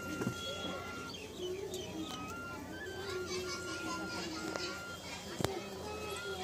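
Faint background of children's voices and music, with one sharp tap about five and a half seconds in.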